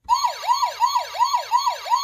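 Electronic police-siren sound effect from the sound panel of a Tonka play-a-sound book, played when the Sheriff Chuck button is pressed. It is a repeating wail that sweeps up sharply and then slides down in pitch, about three times a second.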